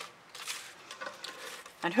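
Brief rustling and scraping as a stretched canvas is handled and tilted on a work table, with a few faint clicks.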